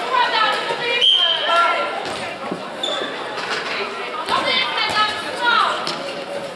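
A handball bouncing on a sports-hall floor among a few short knocks, with players calling out in the echoing hall.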